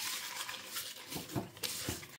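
Kitchen paper rubbing butter around the inside of a slow cooker pot: a steady scrubbing rustle, with a few soft knocks against the pot in the second half.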